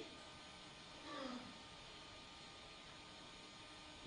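Near silence: a faint steady hiss of room tone, with one brief, faint voice-like sound about a second in.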